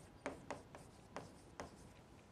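Chalk writing on a chalkboard: a few faint, short taps and scrapes as a letter is stroked onto the board.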